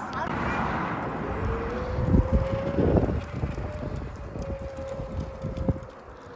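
Mobility-scooter electric drive motor in a child's miniature Land Rover, whining at a steady pitch as it drives. The whine starts about a second and a half in. Gusts of wind hit the microphone a couple of seconds in.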